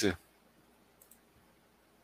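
A voice stops, then near silence with two faint clicks close together about a second in, from a computer mouse working the odds page.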